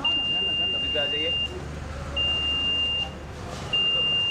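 Electronic beeper sounding a steady high-pitched tone three times: a first beep of about a second and a half, then two shorter ones of about a second, the last starting near the end.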